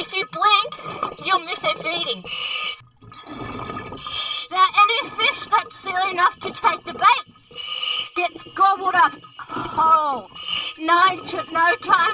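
A person speaking in short phrases, with several brief bursts of hiss between them and a short low rush of noise about three seconds in.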